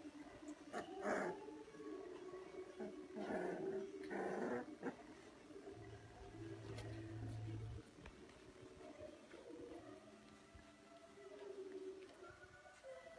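Young puppies play-fighting, making small growls, whimpers and squeaky yips in short bursts. The loudest come about a second in and again around three to five seconds in.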